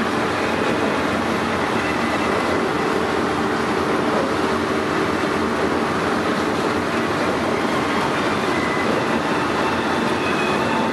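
Steady engine and road noise inside the cabin of a moving van, even and unbroken with no distinct events.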